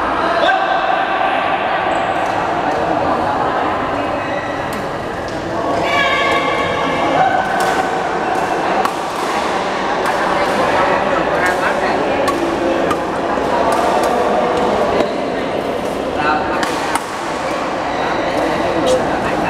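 Badminton rackets striking shuttlecocks in rallies on several courts, sharp cracks at irregular intervals, echoing in a large hall over a steady babble of players' voices.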